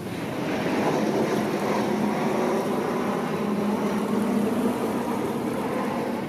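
Steady rush of the fast-flowing Aare River, swelling slightly in the first second.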